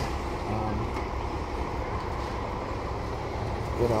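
Steady low rumble of vehicle or road-traffic noise.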